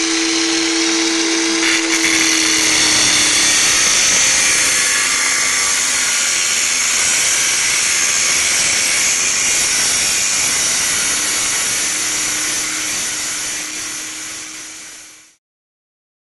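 Loud, steady television static: an even hiss like an untuned TV, with a faint low steady tone underneath at the start and again near the end. It cuts off suddenly near the end.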